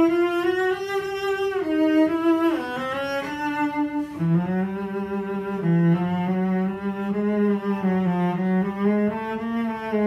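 Cello playing long bowed notes with a continuous wavering vibrato. The notes step down in pitch a few times over the first four seconds, then settle onto lower sustained notes that climb slowly.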